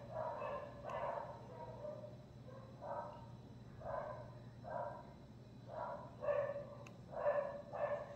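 A dog barking faintly and repeatedly, about ten short barks at uneven intervals, a little louder toward the end.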